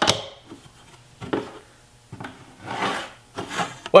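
A steel rule being set down and slid on a plywood panel and a pencil drawing lines along it: a sharp click, then several short rubbing, scraping strokes.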